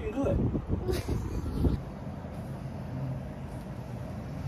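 Indistinct voices for the first two seconds, with a sharp tick about a second in, then a steady low hum of distant traffic coming in through the open window.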